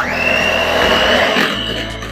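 Electric hand mixer running, its beaters whisking a runny egg-and-sugar batter, with a steady high whine over the whirr. It starts suddenly and eases off near the end.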